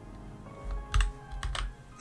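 A few keystrokes on a computer keyboard typing a short word, over soft background music.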